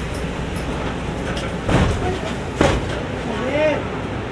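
Interior of a Mercedes-Benz city bus standing at a stop, its idling engine giving a steady low hum. Two sharp knocks land a little under a second apart, just before the middle.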